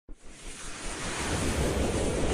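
A rushing whoosh sound effect with a low rumble underneath, swelling up from silence: the opening riser of an animated news intro sting.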